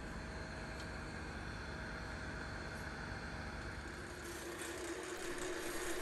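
Wood lathe running with a resin-and-burl bowl blank spinning, a quiet steady hum that grows a little louder near the end.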